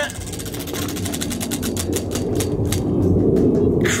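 Spinning prize wheel, its red flapper ticking over the pegs: rapid clicks that slow steadily as the wheel loses speed and stop about three seconds in, with a low rumble underneath.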